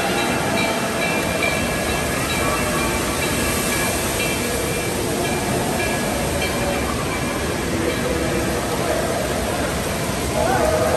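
Steady rushing of water with faint distant voices mixed in, the constant din of an indoor water park.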